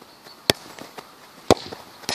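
A football is volleyed with a sharp thud about half a second in, then a second sharp knock about a second later as the ball strikes the goal's crossbar.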